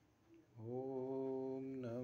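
A man chanting a mantra in a low voice: a long syllable held at one steady pitch starts about half a second in, then a brief break and the next syllable begins near the end.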